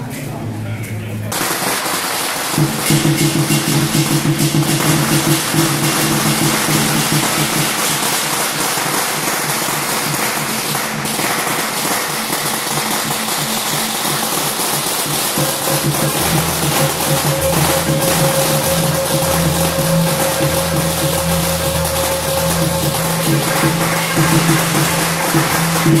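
A string of firecrackers going off in a long, rapid crackle, starting about a second in, over Beiguan processional music.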